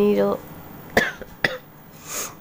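A person coughing twice, short and sharp, about half a second apart.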